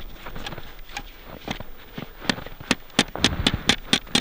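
A metal snow probe being jabbed down through deep snow, giving a run of sharp clicks that come about four a second in the second half as its tip strikes the hard surface beneath. The clear ring tells the prober he has reached the asphalt of the buried road.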